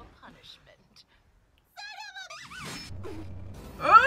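Voices, with a short high-pitched, wavering squeal about two seconds in; the first second and a half is almost silent, and a loud vocal burst comes at the very end.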